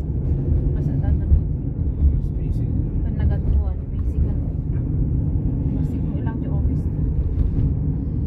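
Steady low rumble of a moving car's engine and tyres on the road, heard from inside the cabin, with faint voices now and then.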